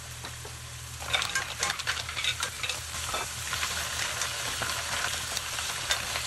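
Mussels in their shells tipped from a glass bowl into a hot pan of tomatoes and garlic frying in olive oil: a steady sizzle, then from about a second in many clicks and clatters of shells over a louder sizzle. A wooden spoon then stirs the shells around the pan.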